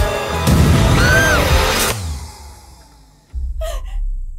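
Horror-trailer score and sound design: a loud impact hit about half a second in, with a brief arching tone over it, dying away over the next two seconds. A short sharp sound comes near the end.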